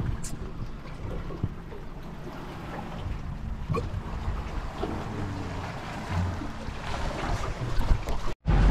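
Wind buffeting the microphone as a low, uneven rumble, with a few faint ticks.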